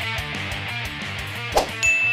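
Death metal electric guitar music playing and trailing off, then a sharp metallic clang about one and a half seconds in, followed by a high, steady ding that rings on: the sound effects of an animated outro card.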